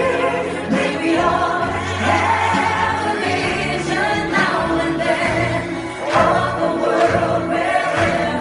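A group of men and women singing together into microphones, accompanied by a live orchestra.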